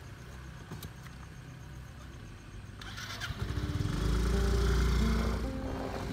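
Motorcycle engine starting about three seconds in and running, its fast firing pulses rising to become the loudest sound. Music comes in near the end.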